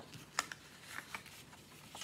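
Strips of scrapbook paper being handled and laid down on a table: light paper rustling with a few small taps, the sharpest one about half a second in.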